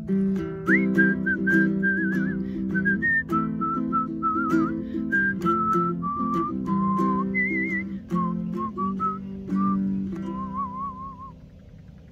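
A person whistling a wordless melody, with a wavering vibrato on the held notes, over strummed ukulele chords. The whistle and the strumming end about eleven seconds in.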